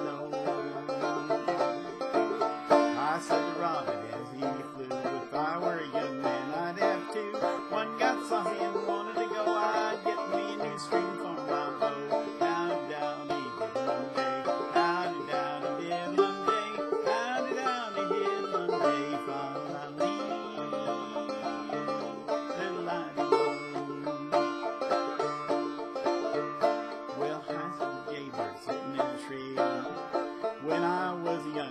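Banjo playing an instrumental break between verses of a folk song, with continuous plucked notes.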